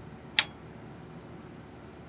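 A single sharp click about half a second in, as the oscilloscope's input coupling switch is flipped to the AC coupling setting, over a faint steady background hiss.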